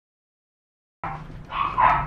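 A six-and-a-half-month-old Belgian Malinois barking in a few short bursts, starting about halfway through after a moment of silence.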